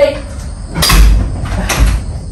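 Two sharp smacks about a second apart, blows landing on a person hard enough to hurt.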